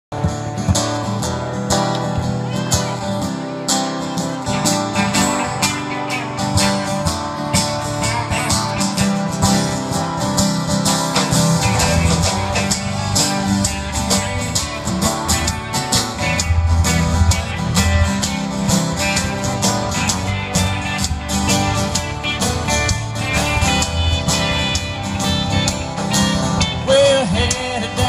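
Live country band playing, with guitars over a drum kit keeping a steady beat.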